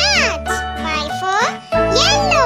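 A child's voice speaking, swooping up and down in pitch, over children's backing music with a steady bass.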